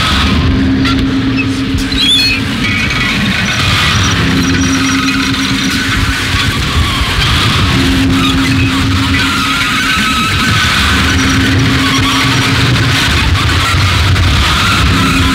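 Harsh noise music: a loud, dense wall of distorted electronic noise that cuts in suddenly, with a low hum that comes and goes every couple of seconds under crackling, hissing upper layers.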